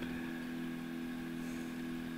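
Room tone with a steady low hum and no other sound.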